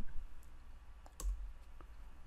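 A few faint computer mouse clicks, the loudest about a second in, as the presentation is advanced to the next slide.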